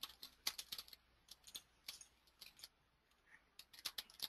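Faint, irregular clicking of computer keyboard keys being typed, in short clusters several times a second.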